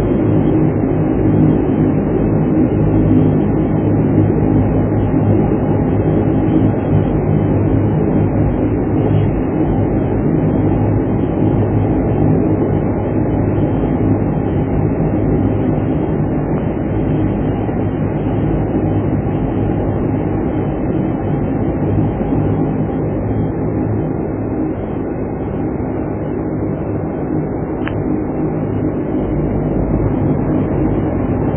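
Twin-turboprop airliner engines heard from inside the cabin while taxiing: a steady drone with a low hum, easing slightly near the end.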